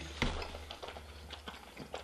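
Faint, irregular wet clicks and smacks of someone chewing a sticky mouthful of honey-soaked baklava close to the microphone, over a low steady room hum.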